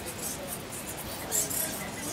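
A roosting colony of bats squeaking and chittering in short, high-pitched bursts, loudest about one and a half seconds in.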